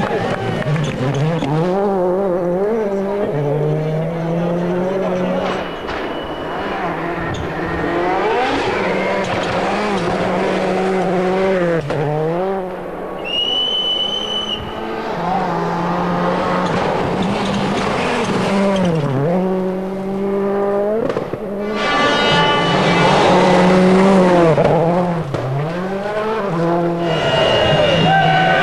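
Peugeot 206 WRC rally car's turbocharged engine revving hard through several passes on gravel stages, the revs climbing and then dropping sharply at gear changes and lifts, with tyres skidding on the gravel. A brief high steady tone sounds about halfway through, and the engine is loudest near the end.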